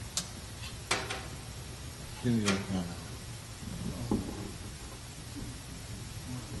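A quiet pause on stage: a few sharp clicks in the first second, and a short voice sound about two seconds in.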